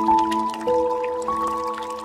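Slow, soft ambient music of long held notes that ring on and fade, with new notes entering one at a time, about a third of the way in and again past halfway. Underneath, faint drips and trickling of water.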